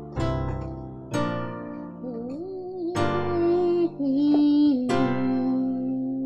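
Keyboard set to a piano sound, playing slow chords of a worship-song progression, each struck and left to ring, four in all, starting with a C major chord. From about two seconds in, a voice hums or sings a held melody line over them, sliding between notes.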